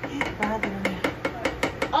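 A plastic slotted spoon stirring a seasoning sauce in a cast-iron skillet, giving a quick, irregular run of clicks and crackles.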